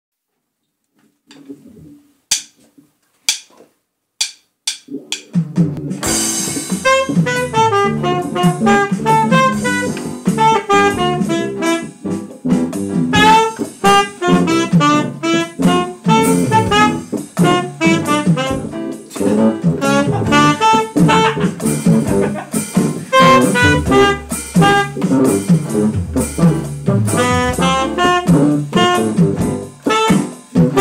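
Jazz combo of saxophone, bass, keyboard and electronic drum kit playing, with the saxophone carrying the melody. It opens with a few sharp clicks, and the band comes in about five seconds in.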